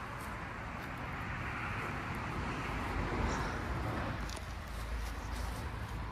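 A road vehicle passing on the highway, its tyre and engine noise swelling to a peak about halfway through and then fading.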